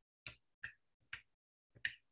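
A series of short, sharp clicks, about four in two seconds at uneven spacing, with near silence between them.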